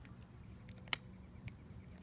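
Utility lighter's igniter clicking: one sharp click about a second in and a fainter one half a second later, over low background.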